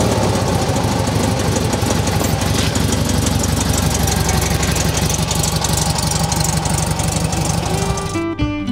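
Air-cooled 1300 flat-four engine of a 1980 Volkswagen Beetle running steadily, with a fast, even, clattering beat.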